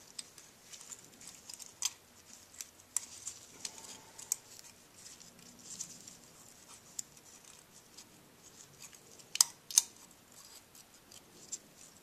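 Small metal clicks and light scraping as a steel feeler gauge is worked into the exhaust valve gap between the rocker arm and valve stem of a Honda XR70R engine to check the clearance. The ticks are scattered and sharp, with two louder ones close together about nine and a half seconds in.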